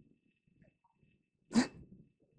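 A man's single short, sharp burst of breath, a stifled laugh, about one and a half seconds in, after faint breathing.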